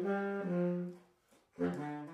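Baritone saxophone playing a melody: a few held notes, a short break about a second in, then one more note near the end.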